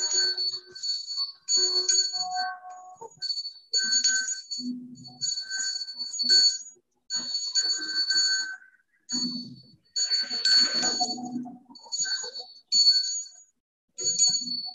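A small metal hand bell shaken repeatedly in short bursts, about one a second, each burst ringing a bright high tone, with brief pauses between.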